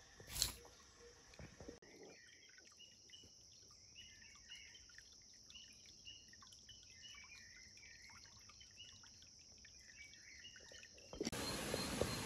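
A brief knock right at the start, then faint, high, repeated chirping calls of small animals over a very quiet background. About eleven seconds in, a steady, louder chorus of night insects starts abruptly.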